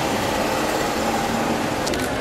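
Steady street noise of traffic, with a short sharp click near the end.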